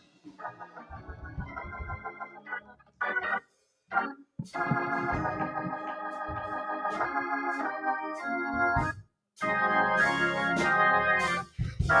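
Organ playing held chords, softly at first and fuller from about four seconds in, with brief breaks between phrases: the introduction to a congregational song.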